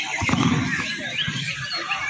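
Caged contest songbirds chirping and singing in many short, quick phrases.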